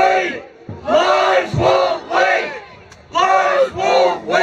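A man shouting a protest chant into a microphone, with a crowd of protesters shouting along. The short phrases repeat about once a second, in pairs, with brief pauses between them.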